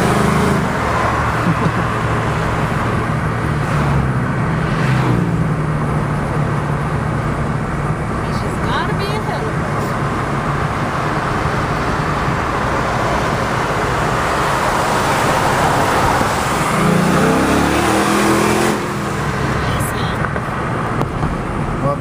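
Car engine and tyre noise heard from inside a moving car, running steadily, with an engine rising in pitch as it revs up briefly about three-quarters of the way through.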